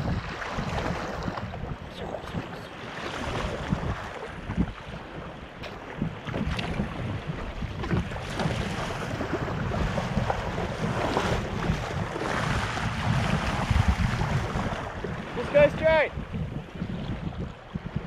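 Wind buffeting the microphone over the rush and slap of choppy sea water around a paddled sea kayak, with the splashes of paddle blades. A short voiced call comes near the end.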